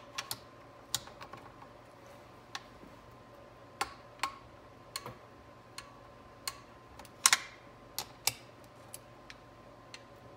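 Torque wrench clicking on the valve body bolts of a 4L60E transmission: sharp, irregular metallic clicks in short strokes, with a louder double click about seven seconds in.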